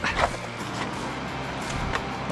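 Steady rushing of river rapids over rocks, with background music underneath.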